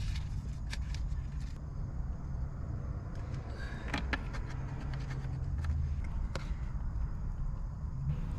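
A few light clicks and a scrape of a utensil against a stainless steel pan as butter melts in it, over a steady low hum.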